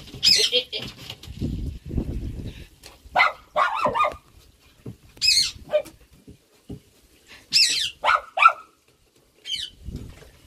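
Small wet dog giving repeated short, high-pitched whining cries while it is being bathed and rubbed, about seven cries spread through the stretch. There is low handling noise between the first few cries.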